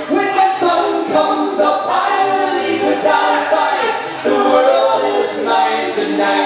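A live band's singers in multi-part vocal harmony over a thin backing, with a light high ticking keeping an even beat.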